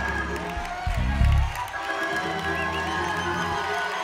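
Church worship band playing held keyboard chords over a heavy bass line, with the congregation cheering and shouting praise over the music.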